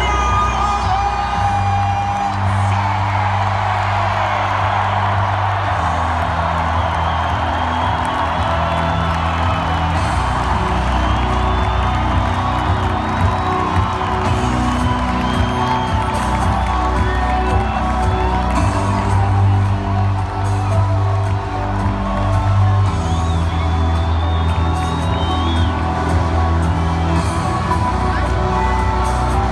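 Loud arena music with a heavy bass line over a cheering, whooping stadium crowd during team introductions.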